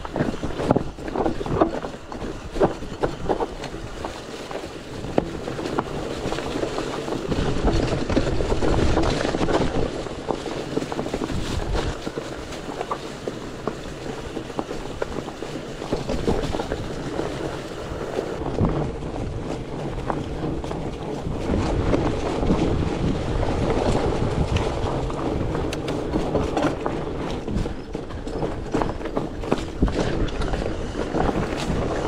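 Fat bike riding over rocky, leaf-covered single track: a steady rush of fat tyres rolling on leaves and rock, broken by frequent sharp knocks and rattles from the rigid bike jolting over rocks, thickest in the first few seconds.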